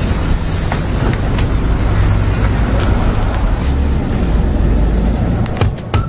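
Steady low rumble of a bus engine with street traffic noise, with a few sharp clicks near the end.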